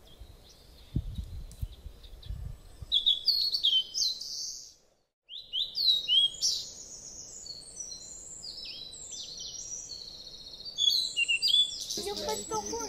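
Birds chirping and singing: many short, high, falling notes, growing denser after a brief break about five seconds in. A few low thuds sound in the first couple of seconds.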